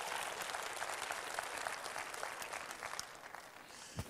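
A congregation applauding, a steady patter of many hands clapping that dies away in the last second.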